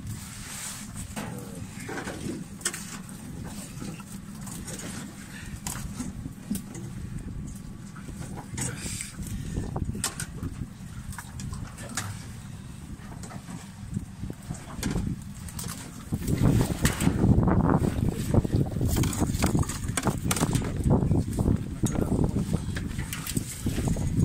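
Nylon fishing net being handled and cut by hand in a small boat: rustling with many small clicks and ticks. A louder low rumble comes in about two-thirds of the way through.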